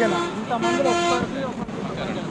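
Vehicle horn honking in passing road traffic: a short toot at the start, then a longer steady blast of about half a second.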